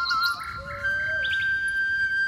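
Background flute music with held and gliding notes, with short bird chirps mixed in.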